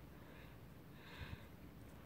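Near silence: faint background hiss, with one soft, brief sound a little over a second in.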